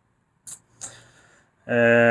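A man's short mouth click and intake of breath, then a drawn-out, steady hesitation sound ('ehh') starting near the end.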